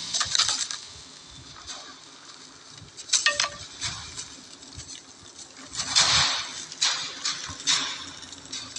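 Film sound effects: scattered short crackles and clinks over a quiet background, the loudest about six seconds in.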